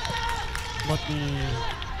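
Football commentary: a man speaking Vietnamese over the match's broadcast background sound, with a steady thin tone in the background through the first half.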